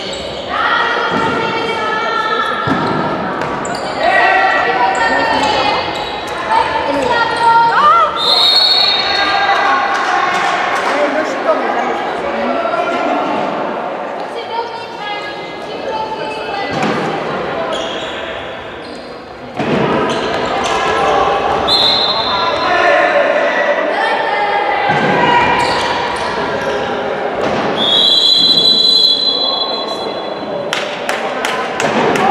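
Handball game in a large, echoing sports hall: voices shouting and calling out over the handball bouncing on the wooden floor. A referee's whistle sounds briefly about a third of the way in and again past two-thirds, then gives a longer blast near the end.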